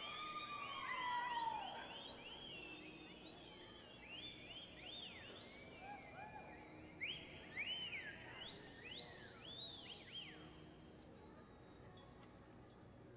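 Spectators whistling and whooping in encouragement, many overlapping rising-and-falling whistles over a faint crowd hum. The loudest whoops come about a second in, and the whistling dies away near the end.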